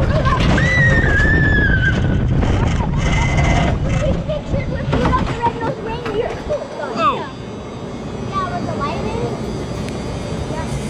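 Wild mouse roller coaster car rumbling along its steel track, the low rumble easing off about seven seconds in. Riders' voices ride over it, with a long high squeal about a second in and more short calls near seven seconds.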